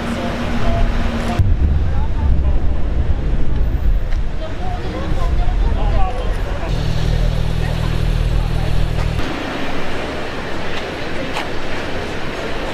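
Supercar engines running at close range amid street noise, the sound changing abruptly several times. For a couple of seconds in the middle there is a steady low engine note, as of a car idling. People's voices are in the background.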